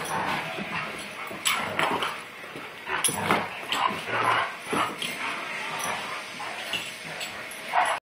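Two dogs play-wrestling, vocalizing in short, irregular bursts throughout.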